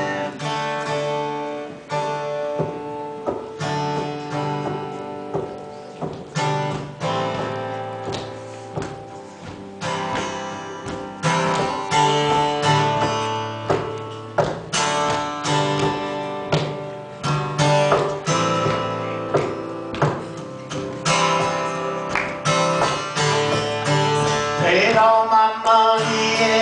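Solo acoustic guitar playing chords in a steady rhythm as the instrumental introduction before the vocal comes in.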